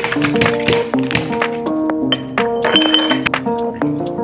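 Background music with a melodic line, over which ice cubes clink and clatter as they drop from a plastic ice tray into a glass mason jar.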